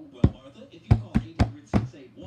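Five sharp knocks on a hard surface at an uneven pace, the first a quarter second in and the last near the end, each with a dull low thud under it.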